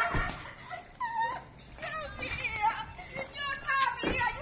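A small dog yipping and whimpering in many short, high calls, mixed with voices.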